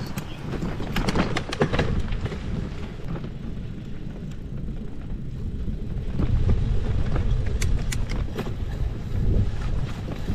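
Bicycle riding on a rough path: a steady low rumble of tyres and wind on the microphone, with scattered clicks and rattles from the loaded touring bike over bumps. The rumble grows louder about six seconds in.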